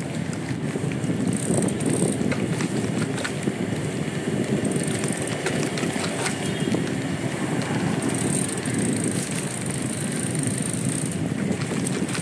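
Triban RC 100 road bike riding along a paved lane: steady tyre and road rumble with small scattered rattles and clicks from the bike.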